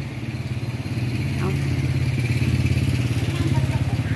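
A motor vehicle engine running steadily with a low, fast-pulsing rumble. It grows a little louder over the first second and then holds steady.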